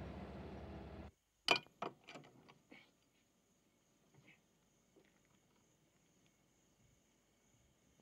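A car's engine and road noise hum steadily for about a second, then cut off. After the cut, a faint, steady, high insect drone remains, with a few sharp clicks and knocks in the next two seconds.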